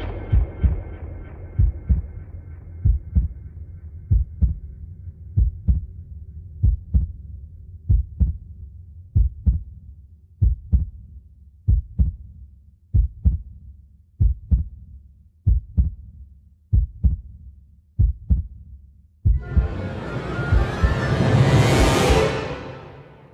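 Heartbeat sound effect in intro music: a low double thump about every 1.2 seconds, at first over a sustained chord that fades away. Near the end a loud swelling rise builds to a peak.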